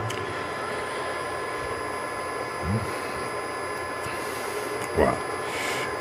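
3 kW air-cooled GMT CNC milling spindle, driven by a Fuling inverter, running steadily at about 4000 rpm after an M3 start command: an even whirr with thin, steady whining tones.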